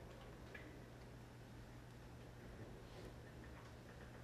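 Near silence: room tone with a steady low hum and a few faint clicks.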